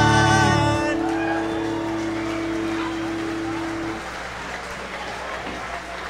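A live rock band's final chord ringing out: the low bass notes stop about a second in, a single held note carries on until about four seconds in, then crowd applause and noise.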